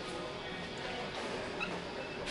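Shop room tone: a steady background hiss of store noise, with a few faint short high-pitched sounds near the middle.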